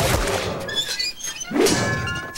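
Sound effects of armoured knights on horseback: a few heavy thuds and clanks, with music underneath.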